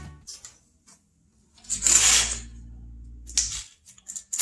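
A wooden-framed hardware-cloth lid being handled on a concrete floor: the wire mesh and frame give a scraping rustle about halfway through, with a few light clicks before and after.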